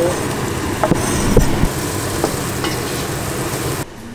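Chopped onion sizzling in a pot, with diced carrot scraped into it off a wooden cutting board with a cleaver: a few short knocks and scrapes of the blade on the board about one and two seconds in. The sound cuts off just before the end.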